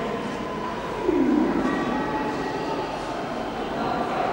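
Busy museum hall ambience: a steady murmur of visitors' voices echoing in a large room, with a louder low sound about a second in that slides down in pitch and fades.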